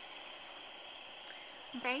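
Steady low hiss of room tone with no distinct sound events, then a brief spoken word near the end.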